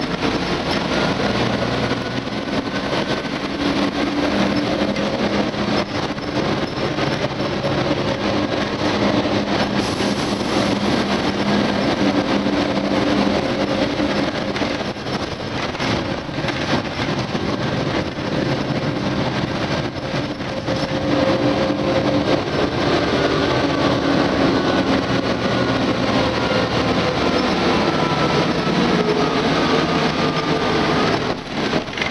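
City bus heard from inside the passenger cabin while moving: steady engine and road noise with small rattles, and a faint whine that slowly rises and falls in pitch as the bus speeds up and slows down.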